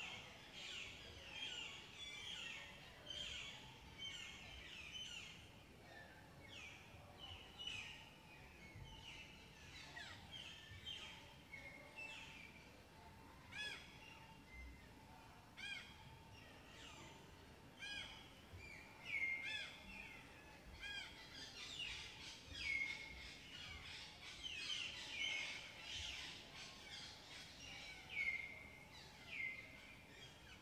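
Several wild birds calling: a steady run of short chirps and downward-sweeping calls, about one or two a second, growing busier and louder in the last third.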